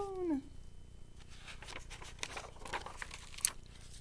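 A woman's drawn-out vocal slide falling in pitch, ending about half a second in, followed by soft paper rustles as the pages of a picture book are turned.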